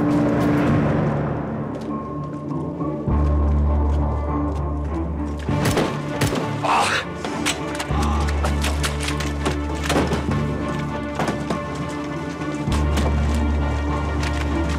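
Dramatic film score with long, deep bass notes. Many short, sharp cracks are scattered through it, like rifle shots in a firefight.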